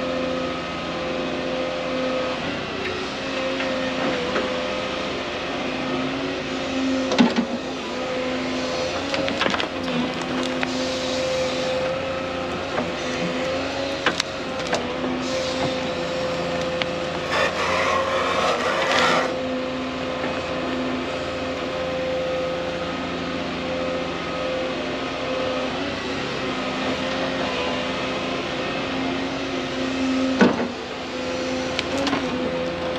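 Volvo 220E tracked excavator's diesel engine running steadily as it digs and swings, with occasional sharp knocks and clatter from the bucket and debris. A louder rattling rush lasts a couple of seconds past the middle.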